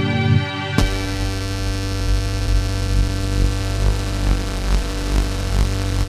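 Instrumental trance music: a held synthesizer chord with a new chord setting in just under a second in, over a steady pulsing bass and no drums.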